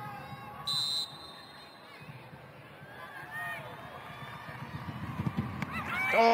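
A referee's whistle blown once, short and shrill, about a second in, signalling the penalty kick to be taken. Scattered shouts from players carry across a near-empty stadium around it.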